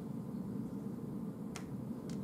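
A single short, sharp click near the end, over steady low room noise.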